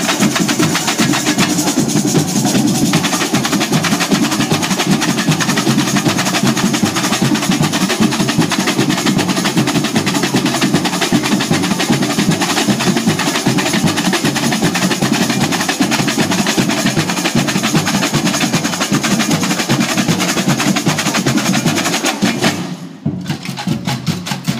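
A samba bateria playing together: surdo bass drums, snare-type drums and many tamborins struck with sticks in a dense, fast groove. It stops abruptly near the end.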